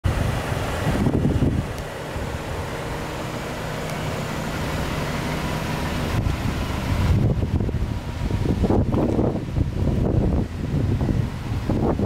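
Wind buffeting the microphone in uneven gusts, heaviest over the second half, over a steady low hum in the first half.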